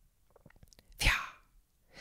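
Faint mouth clicks, then one short, breathy, hissing burst of breath from a man about a second in.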